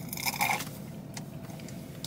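Quiet sipping through a plastic straw from an iced coffee in a plastic cup, with a short sharp click a little over a second in.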